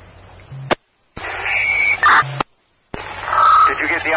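Fire department radio traffic through a scanner: open-channel hiss that cuts off abruptly as transmissions unkey, twice leaving short dead silences, with brief steady tones at key-up and unkey and garbled, unintelligible radio voice.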